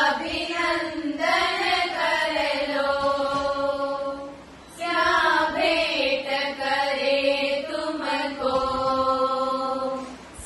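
A group of women singing a Jain devotional song together, with long held notes and a short break for breath about halfway through.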